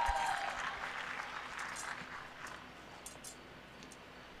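Spectators applauding, dying away over the first two seconds or so.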